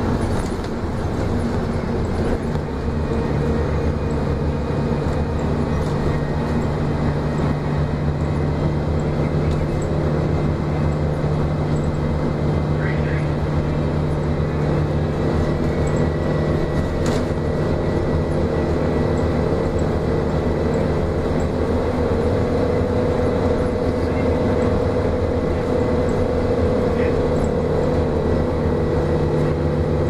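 A 2004 Gillig Low Floor 30-foot transit bus heard from inside the cabin while driving: a steady engine and drivetrain drone with road noise, holding a fairly even pitch.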